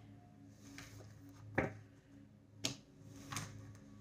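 Tarot cards being gathered up off a cloth-covered table and stacked: four light taps and clicks, the loudest about a second and a half in.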